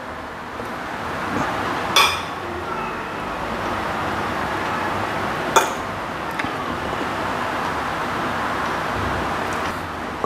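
A metal spoon and fork clinking against a ceramic plate twice, about two seconds in and again about five and a half seconds in, over a steady background hiss.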